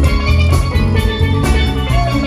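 Live band playing upbeat dance music: electric bass and drum kit with a steady beat, and a melody line on top.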